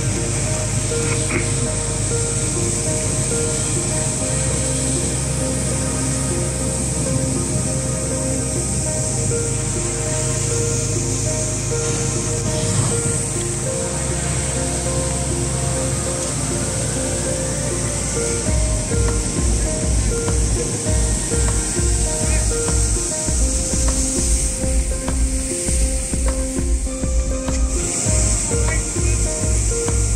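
Background music: held synth-like tones over long bass notes that change every few seconds, with a pulsing beat coming in about two-thirds of the way through.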